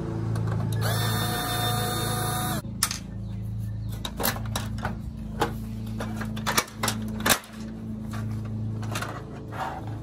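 Cordless drill-driver running for just under two seconds about a second in, backing a screw out of a laser printer's plastic case. Then a string of sharp plastic clicks and knocks as the case is handled and its cover pried and lifted off.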